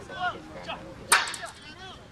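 Voices calling out from the sideline, broken about a second in by one sharp, loud crack that is followed by a few quick clicks.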